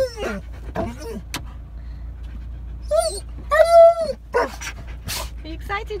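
Alaskan malamute whining and yelping excitedly in a run of short, high, bending cries, the longest and loudest a little under four seconds in. A short sharp noise follows about five seconds in.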